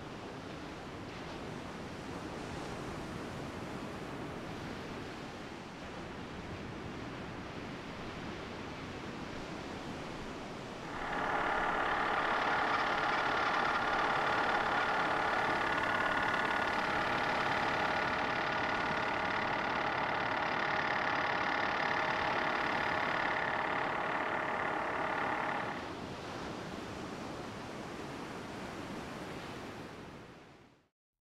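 Ocean surf washing onto a beach, a steady rushing noise. About eleven seconds in, a louder steady hum made of several held pitches joins it. The hum lasts about fifteen seconds and then cuts off, leaving the surf.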